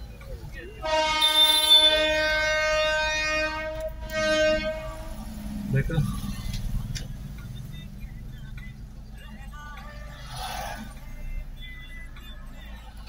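A horn sounding one steady high note: a long blast of about three seconds, then a shorter blast a moment later, over the low rumble of road noise inside a moving car.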